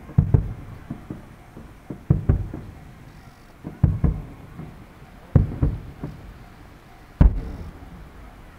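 Aerial firework shells bursting overhead: deep booms in clusters of two or three, coming about every one and a half to two seconds, each dying away in a short rolling tail. The loudest single boom comes near the end.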